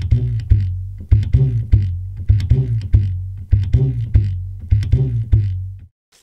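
Tinófono, a washtub bass made from an upturned tub with a string tied to a wooden stick, plucked by hand in a rhythmic bass line of low notes that shift in pitch, about three a second; it stops just before the end.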